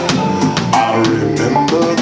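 Live soul band playing between sung lines: drum kit keeping a steady beat under bass guitar, electric guitar and organ.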